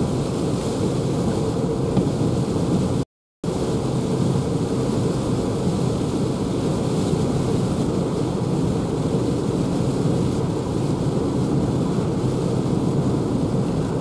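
Steady road noise inside a Renault ZOE electric car cruising at about 84 km/h through a rain squall: tyres on the wet road, with rain and wind on the body and no engine sound. The sound cuts out completely for a moment about three seconds in.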